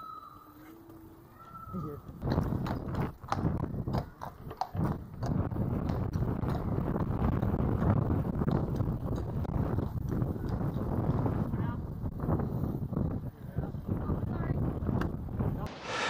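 Low wind rumble on a moving microphone with scattered knocks and bumps, heard while riding electric scooters over paved paths. The first couple of seconds are quieter, with a faint short whistle or two, before the rumble sets in.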